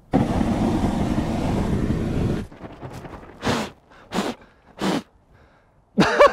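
Deodorant aerosol spray lit by a lighter as a makeshift flamethrower: a loud, steady hiss of burning spray lasting about two and a half seconds, cutting off suddenly. Three short bursts of noise follow about a second later.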